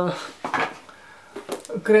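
Small hard items clinking and knocking as they are picked up and handled: one sharp clink about half a second in, then a few lighter clicks.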